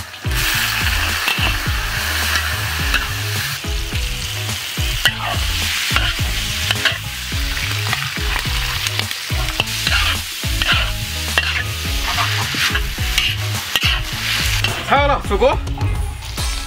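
Oil sizzling steadily in a hot wok as minced aromatics fry and shredded pork, red chilies and carrot are stir-fried with a long metal spatula.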